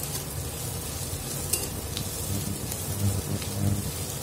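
Shredded cabbage and onions sizzling as they fry in a stainless steel kadai, stirred and scraped around the pan with a spatula. A few light clicks of the spatula on the metal, and the scraping is heavier in the second half.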